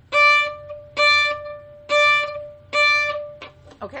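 Violin playing four staccato notes on the same high pitch, about one a second, each with a sharp, bitten-in start and a fast bow stroke, then fading as the string rings on briefly.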